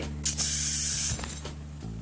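A dramatic hissing whoosh sound effect lasting about a second, over a low, sustained background music drone.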